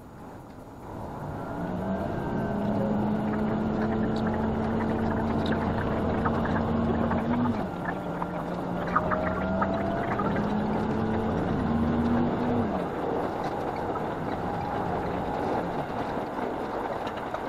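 Diesel railcar engine and running noise heard from inside the train as it pulls away. The sound swells about a second in into a steady hum and rumble whose pitch steps down and back up a few times, as the transmission and throttle change.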